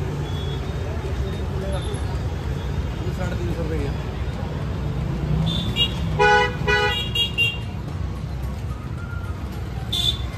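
Busy outdoor market hubbub: a steady low rumble of crowd and traffic with scattered voices. A little past halfway a vehicle horn gives a few short toots in quick succession.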